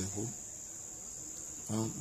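A steady high-pitched insect trill, typical of crickets, running without a break.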